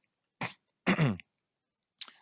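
A man clearing his throat: a short sharp rasp, then a louder voiced throat-clear falling in pitch.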